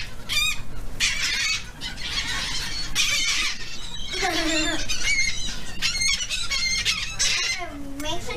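A flock of gulls calling over one another in many short, high-pitched squawks and squeals, crowding close while being fed.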